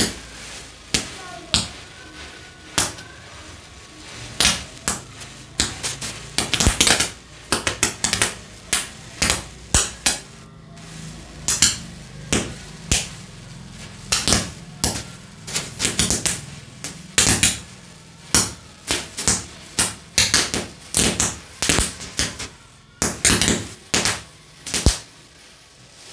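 A chain of standing matchsticks burning, with match heads catching one after another in sharp, irregular pops and crackles, one to three a second.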